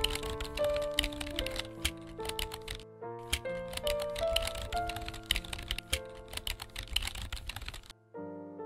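Computer keyboard typing sound effect: a quick run of key clicks, with a short break about three seconds in, stopping near the end. Gentle background music plays underneath.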